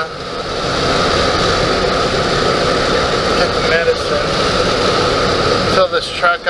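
Steady road and engine noise inside a moving truck's cabin, growing a little louder about half a second in.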